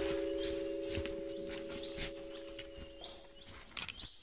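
A held music chord slowly fading away. Under it are light, quick footfalls and a few short, high bird chirps of cartoon forest ambience, with a couple of sharper knocks near the end as the runner stumbles.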